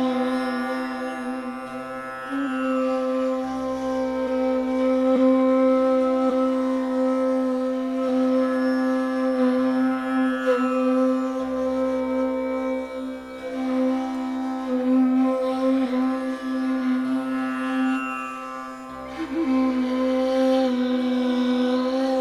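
Persian ney playing long, held notes in a slow improvisation, with slight bends in pitch, over the steady drone of a tanpura.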